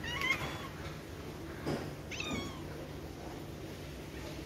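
A cat meowing twice in short, high-pitched calls, one at the start and one about two seconds in, the second falling in pitch at its end. A faint tap comes just before the second meow.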